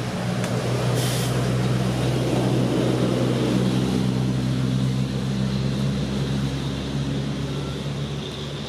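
A motor vehicle's engine running with a low, steady hum that grows louder over the first few seconds and then eases off. A short hiss comes about a second in.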